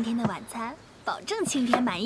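A cleaver chopping vegetables on a round wooden chopping block, a few sharp chops, with a woman's voice over it.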